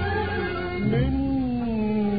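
Arabic orchestral music: a bowed string section playing a slow melodic line that slides between notes, with a new, gently falling phrase starting about a second in.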